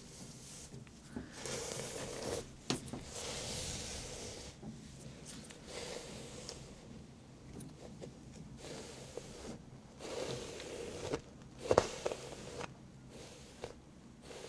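Close-miked scraping and rustling strokes that come and go in several bursts, with a sharp click early on and a louder knock a little before the end.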